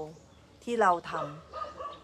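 A woman's voice speaking a short Thai phrase, with one drawn-out syllable that bends in pitch, between pauses.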